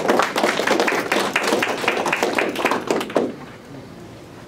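A small audience clapping, dense at first and dying away about three seconds in.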